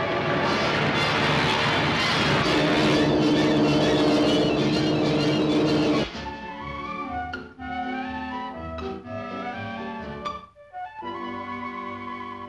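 Orchestral cartoon score: a loud, full orchestral passage with a long held note in its second half, which breaks off about six seconds in into a quieter passage of woodwinds and brass.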